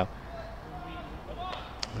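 Quiet open-air cricket ground ambience between deliveries: a low steady background hum with faint distant voices, and a single sharp click near the end.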